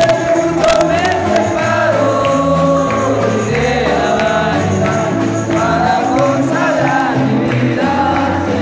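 Live evangelical congregational hymn singing: men's voices through microphones over an amplified band with a stepping bass line and percussion.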